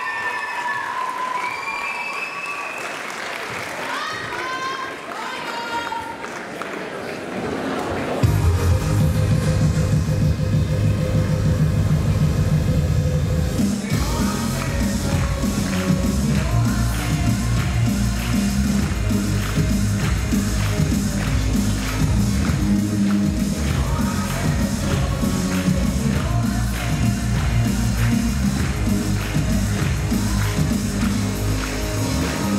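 Audience clapping and cheering with shouts for about eight seconds, then loud rock'n'roll dance music with a steady beat starts suddenly and plays on.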